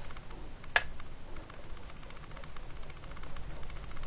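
Pencil scratching on paper in short strokes, drawing hatch lines. A single sharp click comes about three-quarters of a second in.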